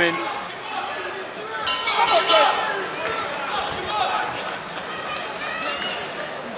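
Boxing ring bell ringing about two seconds in to end the round, over the shouts and noise of the arena crowd.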